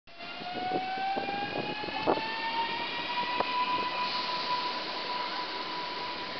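NEWAG Impuls 31WE electric multiple unit pulling away from a station, its traction drive giving a whine that rises in pitch as the train gathers speed and then levels off about four seconds in. A few short knocks sound in the first few seconds.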